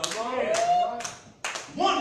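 Sharp hand claps, about one every half second, under a man's voice holding a drawn-out word.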